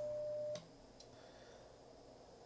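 Icom IC-7300 CW sidetone, a steady tone of about 600 Hz while the radio transmits a carrier for an SWR check on 10 meters. It cuts off with a click about half a second in as the transmitter unkeys, with another faint click about a second in, then near silence.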